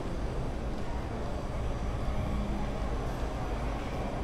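Steady ambient noise of an indoor shopping mall concourse: an even low rumble with a fainter hiss above it, and no distinct events.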